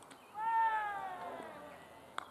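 One long, loud shout from a cricketer just after the ball is played, falling in pitch as it is drawn out, like a call between batsmen.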